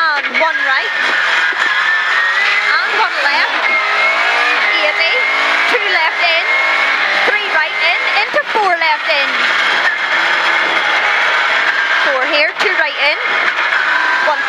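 Rally car engine heard from inside the cockpit, revving up and dropping back over and over as the car accelerates, changes gear and brakes for corners, under a steady high whine.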